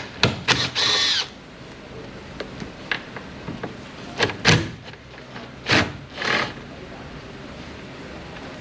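Cordless drill with a socket on an extension spinning in short bursts as it backs out the 10 mm nuts holding a car's side mirror to the door. The bursts come in two groups, a few in the first second, the longest with a steady motor whine, and more about four to six seconds in.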